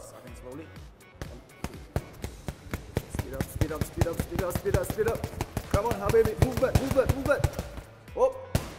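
Rapid flurry of boxing-glove punches smacking against a partner's raised gloves, several strikes a second, fast and light rather than powerful.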